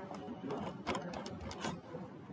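A quick, irregular run of sharp clicks from a computer mouse being clicked and scrolled.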